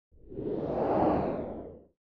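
A whoosh sound effect for an animated logo intro: one swell that builds for about a second and then fades out just before two seconds, followed by silence.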